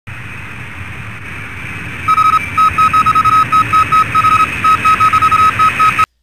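An electronic beep tone sounding in an irregular pattern of short and longer beeps, like Morse code, starting about two seconds in over a steady hiss and hum.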